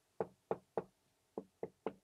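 A hand-held craft backing board knocked against the table: three quick knocks about a third of a second apart, a short pause, then three more, jolting the wet shimmer-powder water across the watercolour paper.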